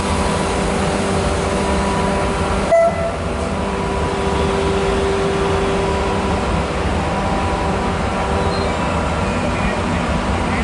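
Class 269 electric locomotive standing still with its on-board equipment running: a steady hum carrying several held tones. A brief sharp sound breaks in about three seconds in.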